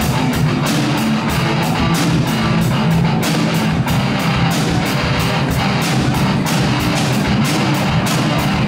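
Live rock jam: a Tama drum kit and an electric guitar playing together with a steady, driving beat.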